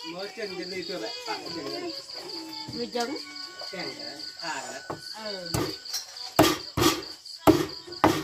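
A knife chopping boiled chicken feet on a wooden board: four sharp strikes in the last three seconds. Crickets chirp steadily underneath.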